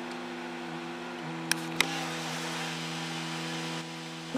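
Steady mechanical hum made of several fixed tones, heard inside a stopped vehicle's cab; its tones step down slightly a little over a second in. Two short sharp clicks come a third of a second apart in the middle.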